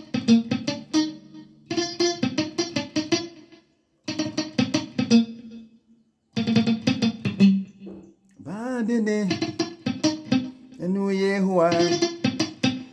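Clean Stratocaster-style electric guitar picking short runs of single notes in several brief phrases with short pauses between them. From about two-thirds of the way in, a man's voice sings along over the guitar.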